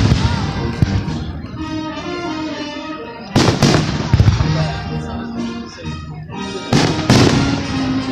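Fireworks shells bursting overhead: three loud booms about three and a half seconds apart, each trailing off in an echo, with music with held notes playing underneath.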